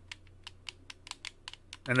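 Buttons on a handheld game controller clicked rapidly and repeatedly, about seven clicks a second.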